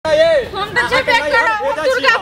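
A woman wailing in a high, tearful voice, a continuous sing-song cry that rises and falls in pitch.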